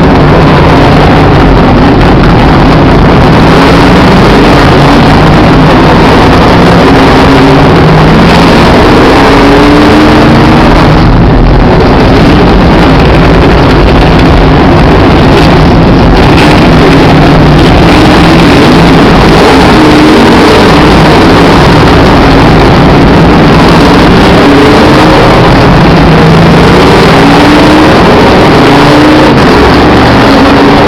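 Race car engines rising in pitch several times as cars accelerate past, under a loud constant rushing noise.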